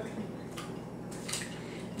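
A liquid custard mixture being poured into a stoneware mixing bowl, quiet, with a few soft knocks of kitchenware.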